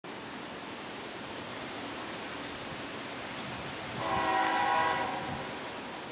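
A CSX freight locomotive's air horn sounds one blast of about a second, a chord of several tones, starting about four seconds in, over a steady hiss.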